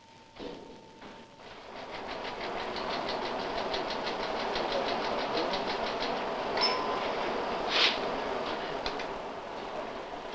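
Teleprinter printing a message: a rapid, even mechanical clatter of about ten strokes a second builds up after a faint start. A short ringing tone sounds past the middle, and a louder sharp rasp follows a second later.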